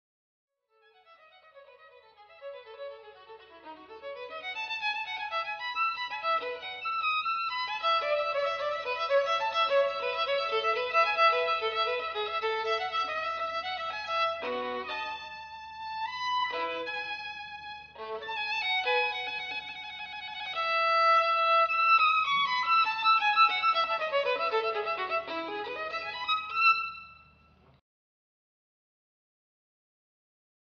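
Violin music: a violin plays a melody that fades in over the first few seconds, thins to a few short separate notes midway, runs downward near the end and stops just before the end.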